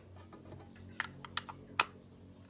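Three sharp clicks from a small cylindrical container being handled, starting about a second in, the last one the loudest.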